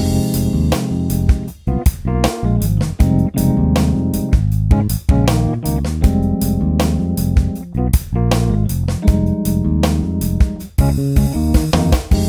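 Roland FA-06 workstation playing music: its sequencer loop with a drum rhythm pattern repeats while a new part is played live on the keyboard and recorded over it.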